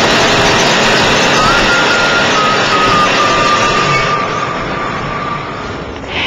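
Dense city traffic noise from a busy multi-lane avenue, fading out near the end. A thin high whine is drawn out over several seconds and slowly drops in pitch.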